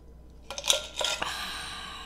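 A stainless-steel insulated tumbler being lowered and set down, giving several sharp clinks and knocks, the last followed by a fading rush of noise about a second long.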